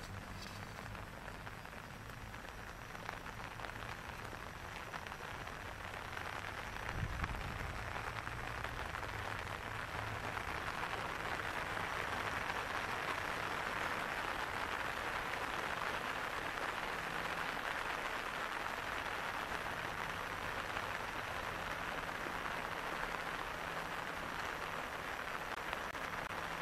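Light rain falling: a steady, even hiss that grows louder about six seconds in and then holds, with a soft low thump about seven seconds in.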